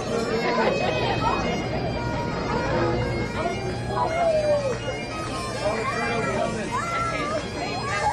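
Bagpipes playing, a steady low drone under the melody, with people talking over it.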